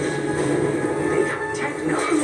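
A film soundtrack playing from a television: a music score with some voices mixed in.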